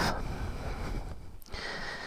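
A man breathing close to a helmet-camera microphone: a long breath out, a short pause about a second in, then another breath.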